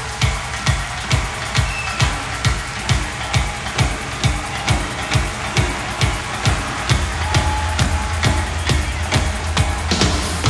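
Live band music in an instrumental drum-driven passage: a steady beat of about two drum hits a second with quick cymbal or hi-hat strokes between them, and a low bass note coming in about seven seconds in.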